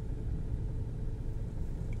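A steady low rumble of background noise with no clear events in it.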